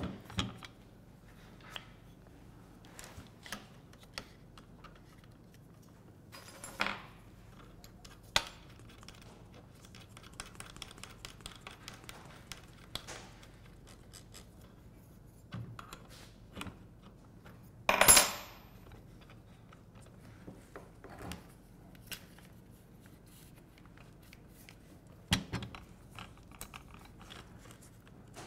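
Scattered small metallic clicks and clinks of a router bit being fitted into a plunge router's collet and worked with a wrench, with one sharp clack about two-thirds of the way through.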